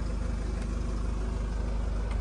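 Ford Kuga 2.0 TDCi four-cylinder diesel engine idling steadily, a low, even hum with a fine regular pulse.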